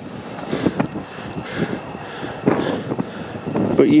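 Wind gusting on the microphone in soft swells about once a second, with a scatter of small crackles and ticks, in light rain.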